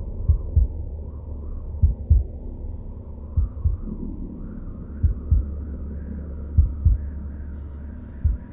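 A slow heartbeat sound effect: five double thumps, each pair about a second and a half apart, over a steady low drone.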